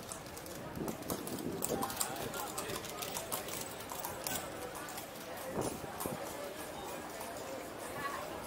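People talking in the street while a horse-drawn carriage passes close by, its hooves clip-clopping on the cobblestones.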